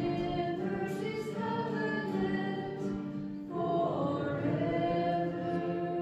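A church choir singing slowly in long held notes, with a louder new phrase coming in about halfway through.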